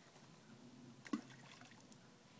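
Faint quiet with one short, sharp click about a second in.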